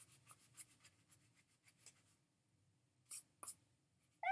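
Small rubber eraser, shaped like a chocolate frog, rubbing back and forth over pencil writing on a paper notepad. A quick run of faint scrubbing strokes stops about two seconds in, and two short, louder swishes follow near the end.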